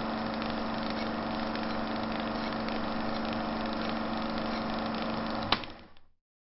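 A steady mechanical hum with a low, even throb that starts abruptly, broken by a sharp click near the end before it fades out.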